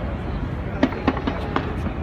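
Fireworks going off: a steady crackling rumble with about five sharp bangs about a second in.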